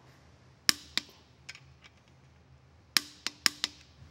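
Click-type torque wrench tightening the connecting-rod cap bolts of a Chevrolet 409 V8: a sharp click about two-thirds of a second in and another just after, then a quick run of four clicks near the end, each click the wrench signalling that a bolt has reached its torque spec.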